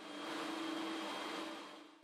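Textile yarn-winding machinery running with a steady mechanical noise and a low hum, fading in and then back out.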